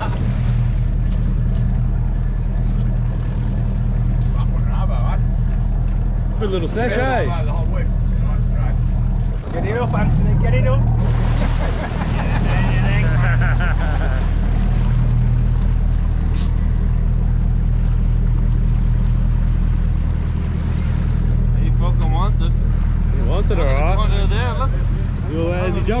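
Fishing charter boat's engine running with a steady, even low hum.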